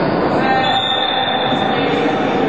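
Busy floorball game noise in a sports hall, with a thin high squeal held for about a second.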